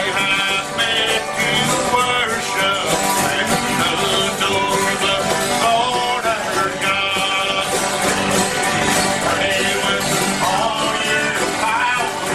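Acoustic bluegrass band playing a gospel hymn: several strummed acoustic guitars with banjo, at a steady tempo without a break.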